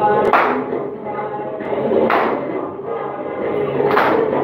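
Live garba music from a low-quality recording: singing over accompaniment, with a loud percussive hit about every two seconds, falling twice here, once near the start and once near the end.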